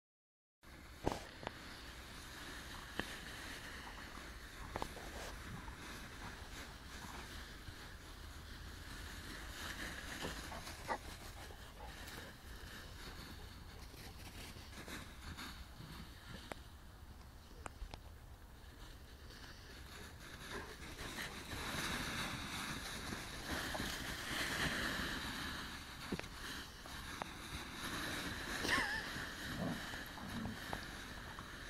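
Vizsla and Rhodesian ridgeback dogs running and wrestling through a deep bed of dry fallen leaves, the leaves rustling and crunching under them. The rustling grows louder in the second half, with a few sharp clicks early on.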